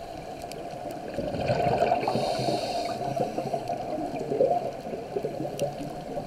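Muffled underwater bubbling and gurgling of a scuba diver's breathing, heard through a camera housing. It grows louder about a second and a half in, with a brief hiss in the middle.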